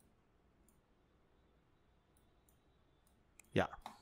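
Faint, sparse computer mouse clicks, a handful spread over a few seconds, each a thin high tick.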